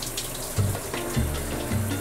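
Water from a shower head spraying steadily, with background music coming in about half a second in, carried by a low bass line.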